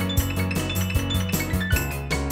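Lowrey Fanfare home organ playing a right-hand melody with fills over held bass notes and a drum rhythm of about four beats a second. The right-hand part is played with the organ's Fake It feature, which corrects wrong notes.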